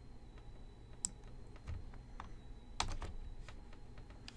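A few scattered computer keyboard and mouse clicks, with a louder pair of clicks about three seconds in.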